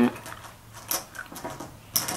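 Light clicks and rustles of jelly beans being handled and picked out of a bowl, with a sharper click near the end.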